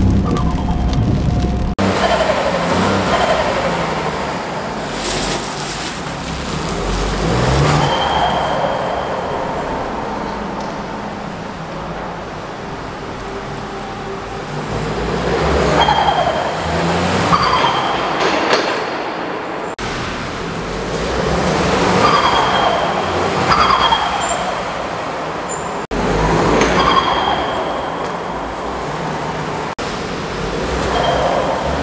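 A Ford 1.0 EcoBoost turbocharged three-cylinder engine, fitted with an aftermarket induction kit, pulling away and revving in an underground car park. Its note rises and falls several times and echoes off the concrete.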